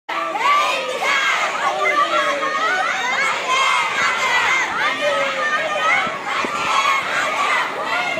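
A crowd of schoolgirls shouting together, many high voices overlapping without a break.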